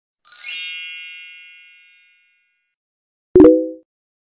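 Two editing sound effects: a bright chime that rings and fades over about a second and a half, then near the end a short, low pop.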